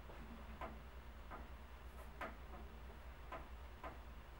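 Faint, sharp clicks and taps at an uneven pace, about one to two a second, over a steady low room hum.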